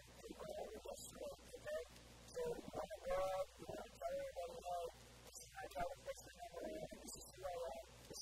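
A man talking continuously in a muffled, low-quality recording, with a faint steady hum underneath.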